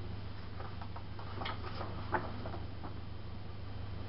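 A folded paper poster being opened out by hand: faint rustling with two sharper crackles around the middle, over a steady low hum.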